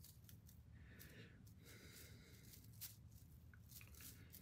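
Near silence, with faint rustling and a few light clicks as fingers press and tuck moss onto a mesh soil cage.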